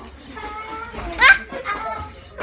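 Young girls' voices talking and exclaiming, with a short, loud rising squeal a little over a second in.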